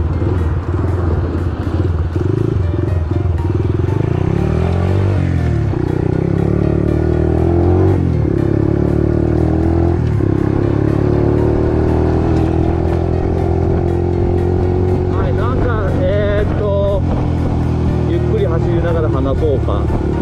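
An 88cc bored-up Honda Monkey four-stroke single engine pulling away and accelerating. It revs up and drops in pitch at gear changes about five, eight and ten seconds in, then runs steadily at cruising speed, climbing slowly. It runs through a loud muffler.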